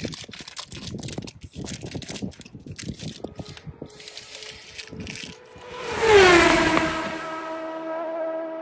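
Plastic protein-bar wrapper crinkling, with crunchy handling noises. About six seconds in, a loud whoosh slides down in pitch and settles into a steady humming tone.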